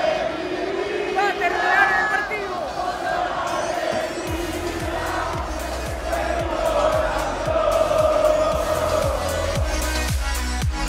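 A large football stadium crowd chanting together. About four seconds in, an electronic dance track with a steady kick-drum beat, about two beats a second, comes in over the chanting.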